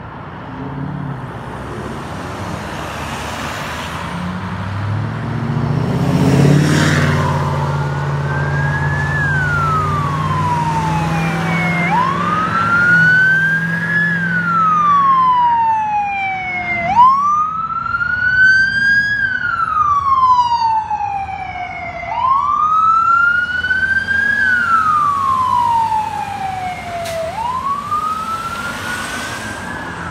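Ambulance siren in wail mode, sweeping up quickly and falling slowly, about once every five seconds from about a third of the way in. Before it, a vehicle engine and traffic noise grow loud as a vehicle passes close by.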